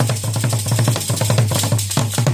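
Traditional Rwandan ingoma drum beaten with two wooden sticks in a fast, even rhythm of about seven strokes a second, each stroke with a deep boom.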